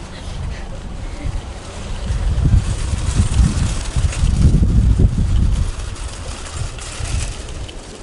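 Wind buffeting the microphone: a loud, gusty low rumble that swells strongest in the middle.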